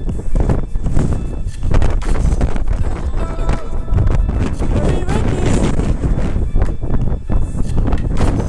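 Wind rumbling on an action camera's microphone, with footsteps and scuffs on stone steps; indistinct voices and some music are mixed in.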